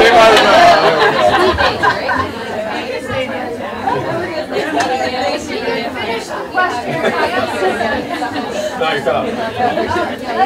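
A roomful of people talking at once in overlapping conversations, with laughter at the start. The talk is loudest in the first second, then settles into a steady hubbub.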